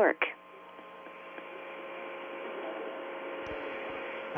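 Steady hiss with a faint hum from an open voice-communications link, slowly growing louder after the last spoken word ends.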